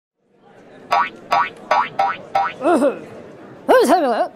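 Short intro jingle for an animated logo. A soft swell leads into five quick, sharp plucked notes about 0.4 s apart, followed by warbling notes that bend up and down in pitch near the end.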